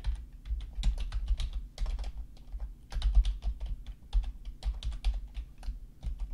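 Computer keyboard typing: a run of quick keystrokes, with a short pause about halfway.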